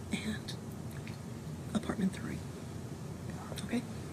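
Hushed whispering voices in a few short snatches, over a steady low room hum.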